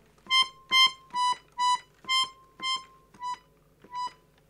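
Paolo Soprani piano accordion playing one high note about eight times in short, detached strokes, each a little softer and slightly further apart than the last, fading toward the end.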